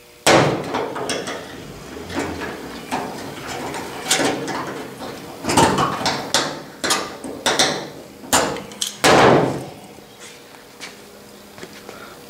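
Pliers working a metal ram's-head hood ornament loose from a truck hood: a run of irregular metal clicks, clinks and scrapes, with louder knocks at the start and about nine seconds in.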